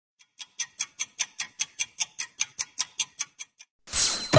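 Countdown timer sound effect: a clock ticking fast, about five ticks a second, that stops just before a bright chime at the very end.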